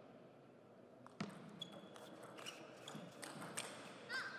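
Table tennis rally: a sharp click of the serve about a second in, then a quick, uneven run of ball hits off the paddles and bounces on the table.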